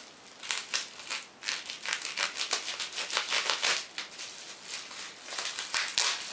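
Plastic wrapping film crinkling and tearing as it is pulled off a parcel by hand, in quick, uneven bursts of crackle.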